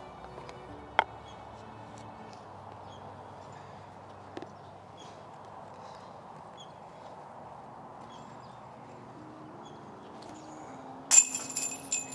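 Soft background music, then near the end a sudden loud metallic clank and jingle of a disc striking the chains of a disc golf basket.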